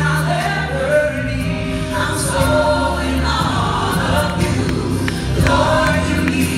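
Live gospel-style song: a woman singing into a microphone, her voice gliding through long sung phrases over a sustained instrumental accompaniment.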